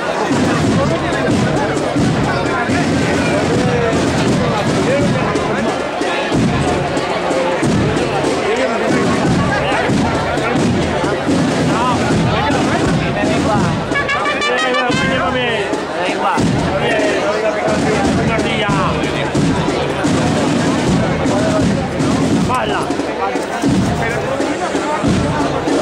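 Brass marching band (agrupación musical) playing a processional march, with people talking close by.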